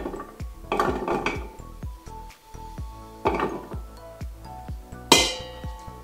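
Chunks of chopped butternut squash dropped by hand into a stainless steel pot, clattering in three bursts, the sharpest about five seconds in, over background music.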